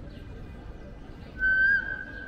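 A single high, steady whistle note about one and a half seconds in, loud for under half a second and then trailing off more quietly, over general outdoor crowd hubbub.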